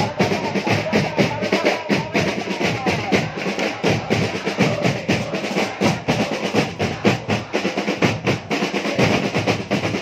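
Football supporters' drums beating a fast, busy rhythm while a large stadium crowd chants along.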